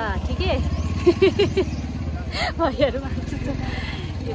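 An engine running steadily at idle close by, with a low pulsing rumble that is strongest in the first two seconds. Voices talk over it.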